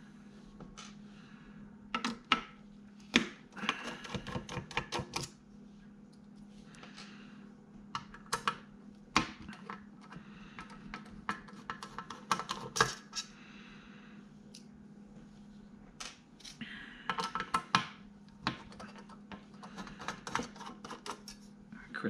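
Small screws being unscrewed from an aluminium drive tray with a precision screwdriver: scattered clusters of light metallic clicks and ticks, separated by quieter stretches.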